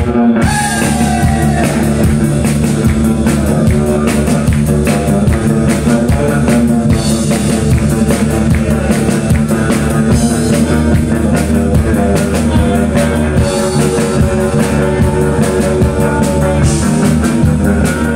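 Live rock band playing an instrumental: electric guitar over a drum kit, loud and steady.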